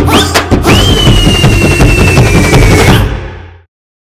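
Upbeat jingle music with fast drum hits. A single high held note starts about half a second in and falls slowly, and the music fades out near the end.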